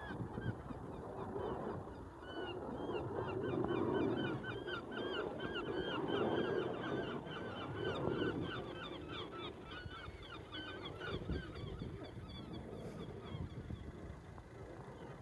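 A flock of geese honking, many short calls overlapping, dying away near the end, over a low distant rumble.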